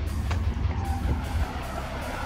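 Background music with guitar over a steady heavy bass.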